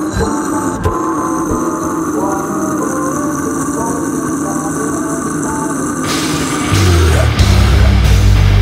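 Atmospheric intro music with a steady drone and hiss. About seven seconds in, a slamming beatdown band comes in loud, with heavy distorted guitars, bass and drums.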